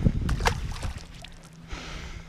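Small largemouth bass released by hand back into the lake: a few quick splashes about half a second in, then quieter water noise with a faint steady hum.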